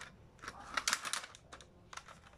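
Plastic Kamen Rider Zi-O toy transformation belt clicking as it is handled and rotated: a quick run of light plastic clicks from about half a second to just over a second in.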